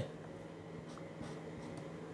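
Faint sounds of a felt-tip marker working on pattern paper, over a low steady background hum.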